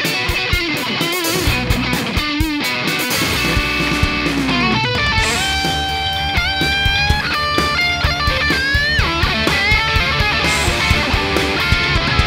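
Electric guitar playing a lead line with several string bends over a backing track with a steady drum beat and bass.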